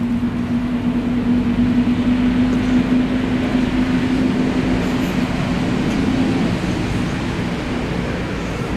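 A running vehicle engine: a steady low hum over a rumble, the hum fading out about six and a half seconds in.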